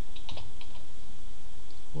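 Computer keyboard keystrokes: a quick run of key taps in the first second, then one or two more near the end as a command line is finished and entered.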